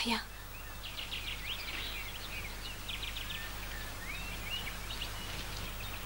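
Faint bird chirps and short rapid trills, with a few quick rising and falling whistles, over a steady low hum.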